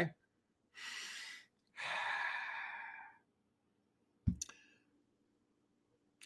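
A man draws a breath in and lets out a long sigh, then makes a short click a little past four seconds in.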